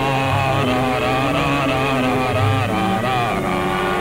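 Instrumental dance interlude of a 1948 Hindi film song, without singing: an orchestra plays a wavering melody over held low notes.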